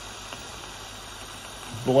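Steady, even hiss of a small butane burner flame heating a beaker of water that is close to boiling.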